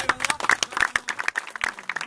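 A group of people clapping their hands: quick, uneven hand claps, several a second.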